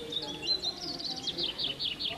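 A songbird singing outdoors: a run of short high chirps that turns into quick falling notes in the second half, with faint voices underneath.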